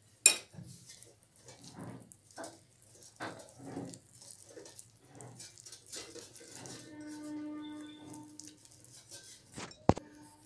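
Wire whisk stirring batter in a glass bowl: irregular clinks and scrapes of metal on glass, with a sharp clink just after the start and another near the end. A faint steady hum runs for about a second and a half past the middle.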